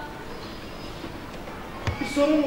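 Steady background noise of a hall with one short, sharp thump near the end as people sit down heavily on a stage sofa.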